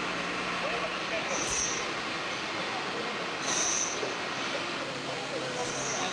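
Steady noisy background with faint, indistinct voices; a short, higher hiss comes about every two seconds.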